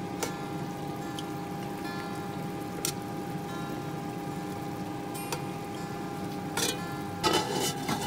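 Metal tongs clicking a few times against a non-stick pot as pieces of chicken are turned, over a steady hum of several fixed tones. Near the end come a clatter and a sharp knock as a glass lid is set on the pot.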